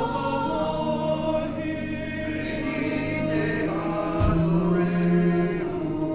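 Mixed choir of men's and women's voices singing sustained, held chords that move from note to note.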